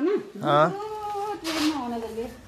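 A pet dog whining in two long, wavering cries, the second beginning about half a second in, excited at someone arriving.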